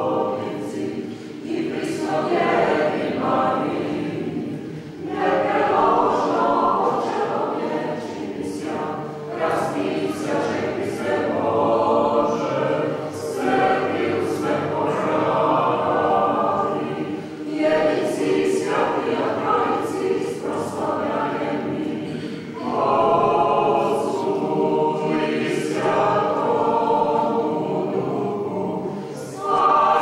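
Unaccompanied mixed choir singing Orthodox church chant in sung phrases with short breaks between them.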